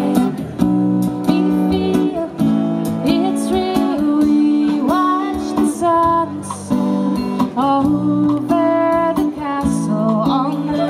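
Live band music: an acoustic guitar strummed in a steady rhythm, with a woman's voice singing over it.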